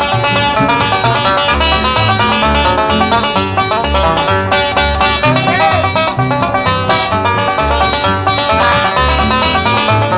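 Live bluegrass banjo instrumental: a five-string banjo picked fast in three-finger style leads over flat-top guitar and a steady string bass. About five and a half seconds in, one note bends up and back down.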